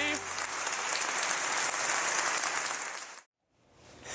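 Audience applauding, cut off abruptly a little after three seconds in, leaving a brief silence.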